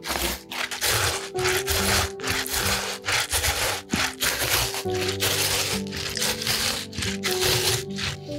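Wet rasping strokes of a juicy vegetable pushed down a metal box grater, about two strokes a second. Soft background music plays under them.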